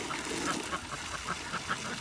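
Domestic ducks giving a run of short, faint quacks over a steady outdoor background.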